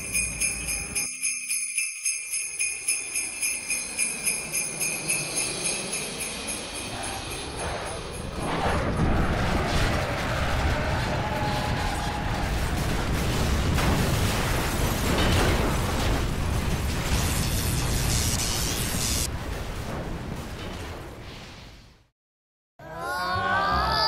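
Sleigh bells jingling in a steady shaking rhythm. About eight seconds in they give way to a loud, rushing rumble that fades away near the end: the sound effect of Santa's sleigh coming down and crash-landing.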